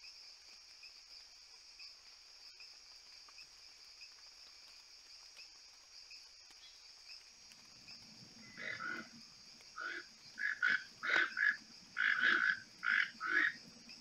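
Eurasian wryneck singing: a run of about ten short, evenly repeated calls, roughly two a second, starting a little past halfway. Before that there is only a faint steady background hiss.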